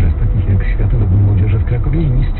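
A voice talking on the car radio, heard inside the car's cabin over a steady low rumble of engine and road noise.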